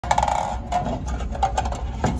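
Rapid clicking and metallic rattling with short ringing notes, densest in the first half-second and again just past the middle.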